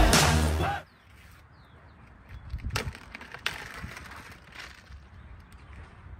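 Intro music that stops abruptly under a second in, followed by quiet, scattered crackles and rustles of a clear plastic wrapper being handled on a softball bat.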